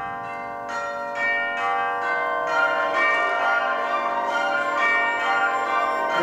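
Orchestral chimes (tubular bells) striking a run of bell notes, about two a second, each ringing on and overlapping the next in a church-bell-like peal within a concert band piece.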